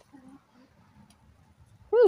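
A quiet pause with faint background sound and one brief, soft, low sound about a quarter of a second in. A woman's voice starts just before the end.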